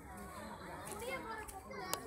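Children's voices talking and calling out, with a single sharp click just before the end.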